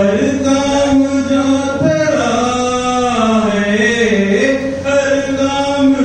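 A man's voice chanting verse through a microphone and PA, in long held notes that slide up and down.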